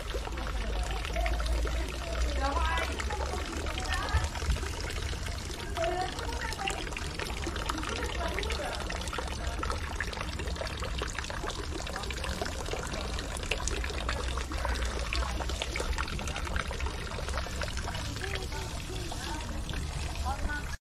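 Water trickling steadily from a bamboo spout into a stone water basin, with voices in the background.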